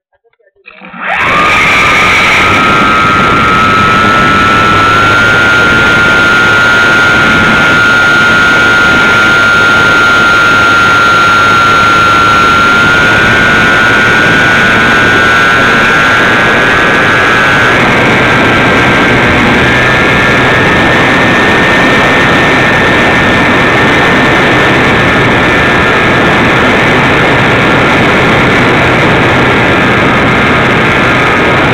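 RC model airplane's motor and propeller running at full throttle, heard from on board: it comes in abruptly about a second in and stays loud and steady through the takeoff and climb. Its whine creeps up in pitch a few times.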